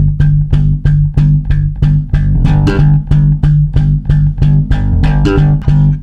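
Five-string electric bass slapped with the thumb, down-thumb technique with the thumb bouncing straight off the string. A quick, even run of slapped notes, mostly on one low note with a few higher notes in between. It stops suddenly at the end.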